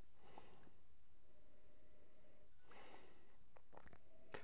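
A man sniffing twice through the nose at a glass of whisky, two short breathy sniffs about two and a half seconds apart, as he noses the dram after tasting it.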